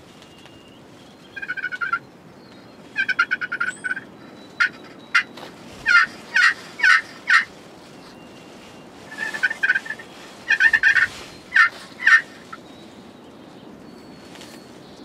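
Rio Grande wild turkeys calling: rapid rattling gobbles in short bursts, with a run of four separate yelp-like notes in the middle, loud and close.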